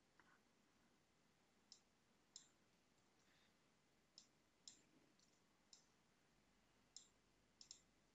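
Faint computer keyboard and mouse clicks, about eight short ones scattered over near silence.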